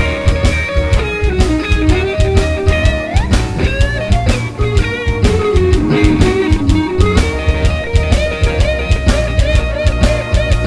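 Stratocaster-style electric guitar playing a blues lead line with string bends, over an E-flat shuffle blues backing track of drums and bass.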